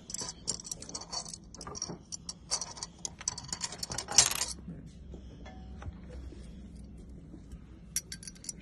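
Heavy stone-set metal chain pendants clinking and clicking against each other and the table as they are handled: a quick run of small sharp clinks, the loudest about four seconds in, then quieter.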